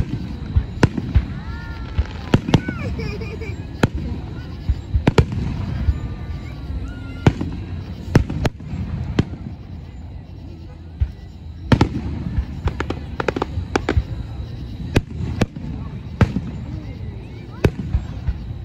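Aerial fireworks shells bursting overhead: a string of sharp bangs at irregular intervals, some coming in quick clusters, over a steady rumble.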